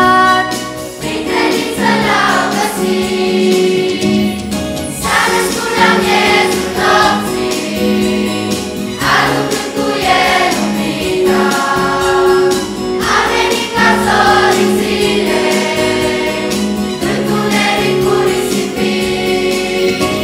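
Children's choir, joined by women's voices, singing a Romanian Christmas carol in phrases that begin about every four seconds, over sustained low notes.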